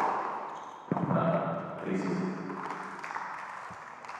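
Tennis ball struck by racquets during a rally in an indoor arena: two sharp hits about a second apart, each ringing on in the hall, followed by a voice.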